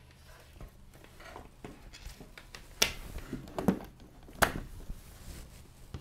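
Faint handling noise of an LCD driver board and its ribbon cable and wires being moved about on a wooden desk, with three short sharp clicks in the middle, the last the loudest.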